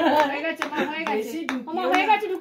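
Several women talking over one another, with sharp hand claps about twice a second.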